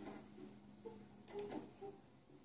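Faint scattered clicks and ticks, with a few short soft tones between them; a cluster of clicks comes about a second and a half in.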